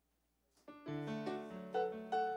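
Korg keyboard with a piano sound beginning to play: after a short silence, notes come in about half a second in and build into held chords that change every fraction of a second.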